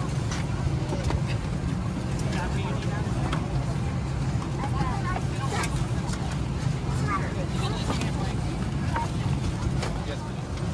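Steady low hum inside an Airbus A319's cabin at the gate, with other passengers talking indistinctly and short rustles of paper as a folded safety card and entertainment guide are handled.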